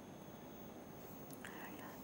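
Faint studio room tone: low hiss with a thin steady high whine, and a soft breath about one and a half seconds in, just before speech resumes.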